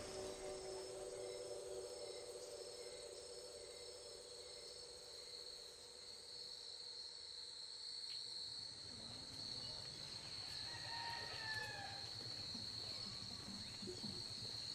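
Night insect chorus: crickets keep up a steady, high-pitched trill throughout, faint overall. A low steady hum fades out in the first few seconds, and a short, slightly falling call sounds about three-quarters of the way through.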